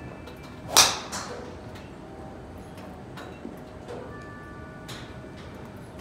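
Golf driver striking a ball off a driving-range mat: one sharp crack just under a second in, with a brief ring after it. A few much fainter clicks follow later.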